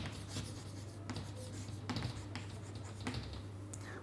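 Chalk writing on a chalkboard: faint, scattered scratches and taps over a low steady hum.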